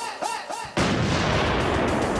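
Music with swooping, sliding pitched notes, broken about three-quarters of a second in by a sudden loud blast, an explosion-like sound effect that rumbles on.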